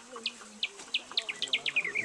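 A bird singing a run of about a dozen short, high whistled notes, each sliding downward, the notes coming faster and dropping in pitch toward the end.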